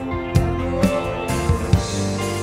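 Drum kit played with sticks along with a backing track, with a drum stroke landing about every half second over its sustained chords.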